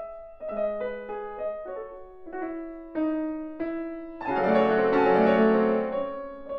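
Piano duo playing a classical-style concert piece: a run of struck notes and chords about every half second, which about four seconds in swells into a louder, denser passage.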